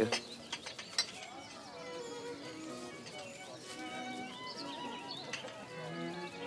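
Soft background score music: a slow melody of held notes moving from pitch to pitch, with a few faint clicks in the first second.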